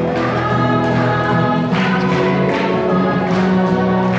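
A group of young children singing a song together in unison, accompanied by a strummed acoustic guitar.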